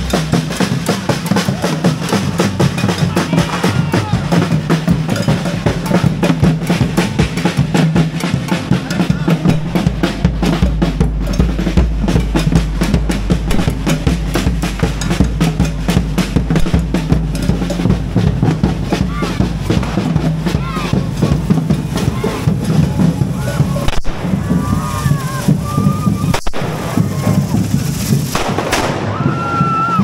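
A street drum group of snare drums and large bass drums playing a fast, driving rhythm. Deeper bass-drum strokes come in about ten seconds in.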